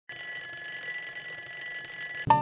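Alarm clock bell ringing steadily with a high, unbroken ring.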